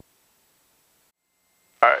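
Near silence, with no engine or cabin noise heard, then a spoken word near the end.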